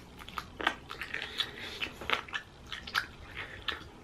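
A person biting and chewing a chicken wing close to the microphone: a string of short, irregular clicks and crunches of teeth on meat and skin.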